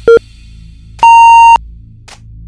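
Workout interval timer countdown beeps over electronic background music: a short low beep at the start, then a longer, higher beep about a second in that marks the end of the interval.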